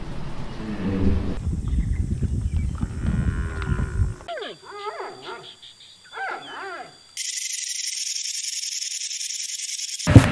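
An animal's whining cries, several short calls that rise and fall in pitch, about halfway through, after a stretch of low rumbling noise; a steady hiss takes over for the last few seconds.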